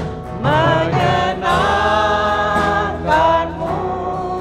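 A small worship band performing an Indonesian praise song: several voices singing long, held notes together over acoustic guitar and band accompaniment.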